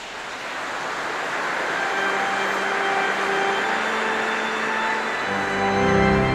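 Organ music fading in over a rushing wash of sound, held chords sounding from about two seconds in, with deep bass notes joining near the end.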